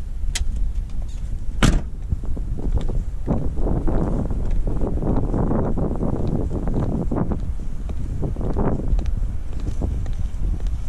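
A car door shutting with a sharp knock just under two seconds in, then wind rumbling on a body-worn microphone, swelling into a rushing noise in the middle, with faint footsteps of heeled sandals on asphalt.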